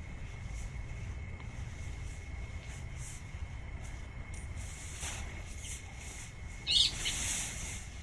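Nylon fabric of a pop-up tent rustling and swishing as it is twisted and folded down, over a steady low wind rumble. Near the end a short high chirp stands out, followed by a louder swish of the fabric.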